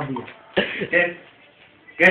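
Speech only: a person's voice, heard twice in the first second, then quieter.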